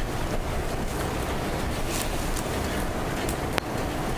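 Steady background hiss and hum of the meeting room and its microphones, with a sharp click about three and a half seconds in.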